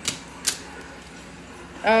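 Nail stamping plates clicking as they are handled and stacked: two sharp clicks about half a second apart, then quieter handling.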